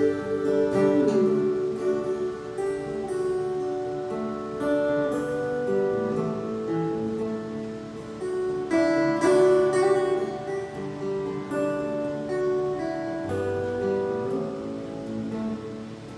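Acoustic guitar playing an instrumental passage, plucked and strummed notes ringing over one another. It is a little quieter near the end.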